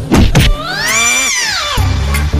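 Two quick hits, then a long pitched sound that glides up and falls away again. A bass-heavy music beat comes in near the end.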